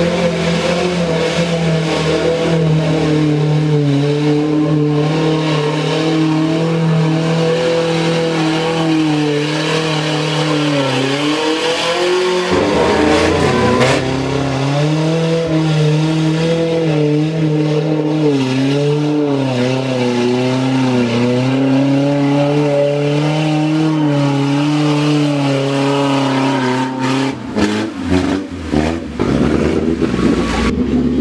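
Mud buggy engine held at high revs as the buggy churns through a deep mud pit, its pitch wavering up and down. About twelve seconds in the revs drop and then climb back, and near the end the sound turns choppy, rising and falling.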